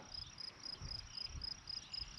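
Faint, high-pitched insect chirping in a steady, even pulse about five times a second, over an uneven low rumble.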